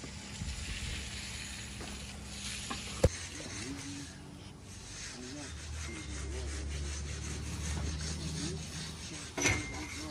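Push broom dragged across freshly poured concrete, a steady scraping rub as the bristles texture the wet surface for a broom finish. A single sharp knock about three seconds in and another sudden sound near the end.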